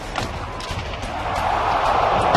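Ice hockey game noise over background music: scattered sharp clacks and knocks of sticks, puck and boards, with arena noise swelling from about a second in.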